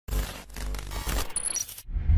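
Logo intro sound effect: a sudden hit followed by noisy brush-stroke swishes, then a few quick high metallic pings like dropped coins, cutting off near the end.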